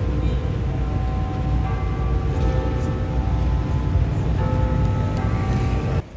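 Music with a heavy, steady low bass and held chords that change every second or two.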